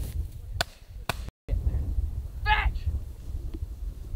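Wind rumbling on the microphone, with two sharp cracks about half a second apart in the first second and a short, high, voice-like call about two and a half seconds in.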